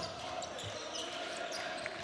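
Basketball being dribbled on a hardwood court, faint knocks over the steady background noise of an arena crowd.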